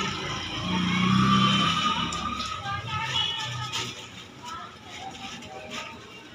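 Indistinct voices and music in the background, loudest in the first half, over a hand mixing thick gram-flour batter in a steel bowl.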